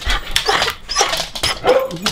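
Beagle barking in short yips close to the microphone.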